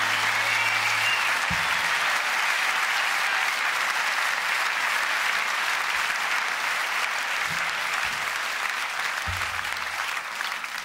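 Audience applauding at the end of an acoustic guitar song. The last guitar chord rings out under the clapping and dies away about a second and a half in.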